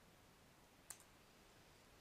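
Near silence with a single computer mouse click a little under a second in.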